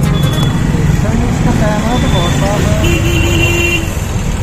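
Road traffic heard from an open e-rickshaw: a steady rumble of road noise, with a horn sounding one steady note for about a second near the end.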